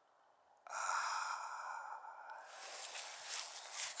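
A long, loud sighing exhale close to the microphone, starting suddenly about a second in, followed by wind rushing and buffeting on the microphone.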